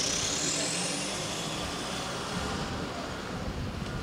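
Toyota Land Cruiser Prado SUV pulling away and driving off across a car park, its engine and tyres fading as it goes. A thin high whine rises steadily in pitch over the first two seconds.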